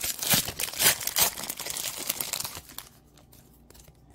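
A baseball card pack's plastic wrapper being torn open and crinkled by hand, a dense run of crackles that stops about three seconds in, leaving a few faint clicks.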